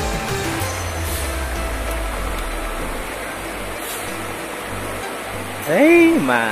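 Steady rush of a shallow, rocky river flowing over small rapids, with a low rumble underneath. Music fades out in the first second, and a man starts talking near the end.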